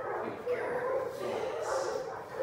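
Small dachshund-mix dog whining in wavering pitch as she is drawn onto her place bed by leash pressure.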